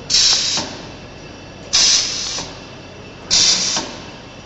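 Chisel mortiser making repeated cutting strokes: three short bursts of hissing cutting noise about a second and a half apart, each starting suddenly and then fading, over a steady lower background.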